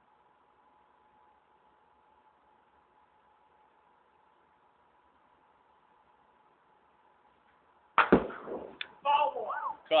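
A faint steady hum in near silence for about eight seconds, then a single sharp crack of a baseball bat hitting a pitched ball. About a second later voices call out loudly.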